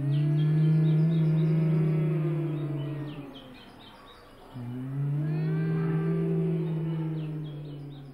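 Low male chanting: one long held note, then after a breath about a second long a second held note of the same pitch, each lasting about three seconds.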